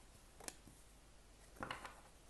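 Quiet handling of oracle cards: a light click about half a second in, then a short soft rustle near the end as a card is taken from the deck and laid on the table.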